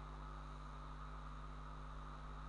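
Steady low electrical hum with a faint hiss: the background noise of the recording, with no other sound.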